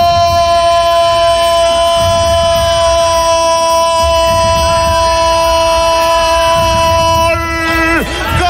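Football commentator's drawn-out goal cry: one long held note that breaks off near the end.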